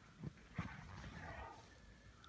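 A brown bear breathing and mouthing at a man's jacket at close range: a soft thump about a quarter second in, then a second or so of breathy, rustling noise.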